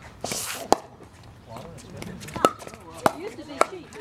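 A pickleball rally: four sharp pops of paddles striking the hollow plastic ball, the last three coming quickly in a fast exchange at the net. A short scuffing hiss comes just before the first pop.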